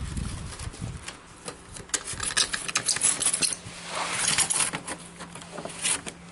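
A glass pane being slid into the channels of lead came on a wooden bench: glass scraping and rubbing against the lead, with dull knocks at first and scattered light clicks, and a longer rasping rub about four seconds in.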